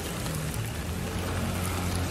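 Rainy city street background: an even hiss of rain and traffic with a low steady hum.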